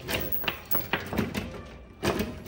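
Steel chain links clinking and a brass padlock rattling as the chain is pulled tight and padlocked across a door: a series of short, sharp metallic clinks.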